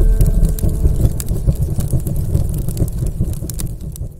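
Explosion sound effect from an animated intro, tailing off: a deep rumble with dense crackling that fades out near the end.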